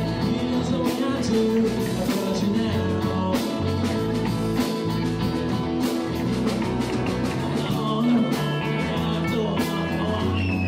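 Live rock band playing: a drum kit keeps a steady beat under electric and acoustic guitars, with a man singing lead.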